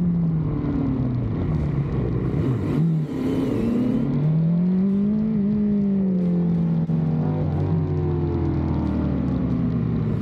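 Racing motorcycle engine at low revs, heard close up from on the bike, with its note rising once about halfway and then easing back down as the bike rolls slowly into the pits after the session.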